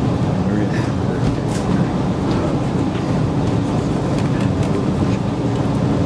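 Steady low rumble of room noise, with faint murmuring voices.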